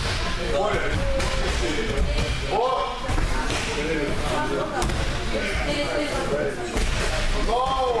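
Judo students' bodies and feet thudding onto tatami mats at intervals during throw practice, under the overlapping voices of many people talking in a large hall.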